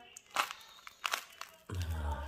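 Elai fruit's spiny husk cracking apart as it is pried open by hand: three short, sharp cracks.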